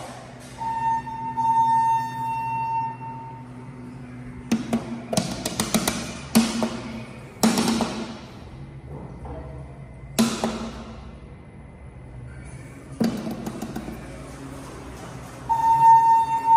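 Elevator call-and-arrival sounds: a steady electronic tone lasting about two and a half seconds, then a run of sharp knocks that ring out briefly. Just before the end, another tone sounds as the elevator car arrives with its doors open.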